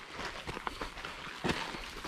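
Footsteps scuffing on a dry dirt trail, irregular, with a louder step about a second and a half in.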